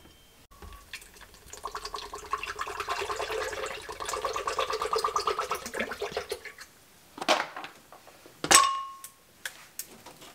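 Wheeled shopping basket rolling over a store floor, rattling with a rapid, even ticking for about five seconds before it stops. A couple of short knocks follow near the end.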